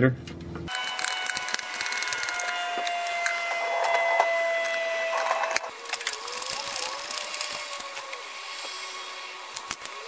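Hand ratchet clicking in quick runs as bolts under the truck are turned out.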